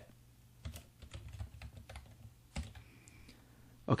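Faint typing on a computer keyboard: a handful of separate soft keystrokes, scattered over the first three seconds, as a spreadsheet formula is typed.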